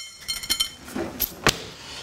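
Kitchen handling sounds: a rustle of crushed tortilla chips being spread by hand on a plate, with a few sharp clicks and knocks. The loudest knock comes about one and a half seconds in.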